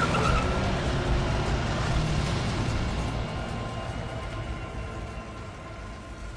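Motorcycle engine running hard and fading away into the distance, under background music.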